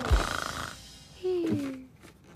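The song ends on a final drum-and-cymbal hit that rings out and fades. About a second later comes a short, falling sleepy sigh in a cartoon voice.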